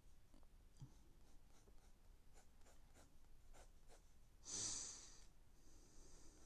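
Faint scratching of a pencil sketching on paper, in short strokes. A louder, short breath comes about four and a half seconds in.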